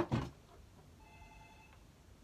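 Phone ringtone, heard faintly in a small room: a short electronic tone made of several steady pitches sounds about a second in and stops after under a second.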